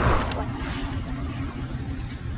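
Low, steady car-cabin rumble from a car on the move, heard from inside, after a brief rush of noise right at the start.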